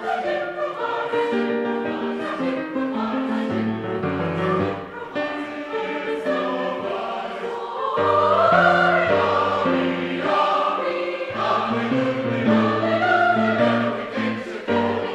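Mixed choir of men's and women's voices singing a choral piece in parts, with piano accompaniment; the singing swells louder about eight seconds in.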